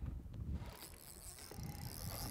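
Spinning fishing reel whirring as a hooked walleye is played, coming in about two-thirds of a second in, over a low wind rumble on the microphone.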